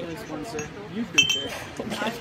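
A drinking glass set down on the table, giving one clink with a short bright ring, a little over a second in.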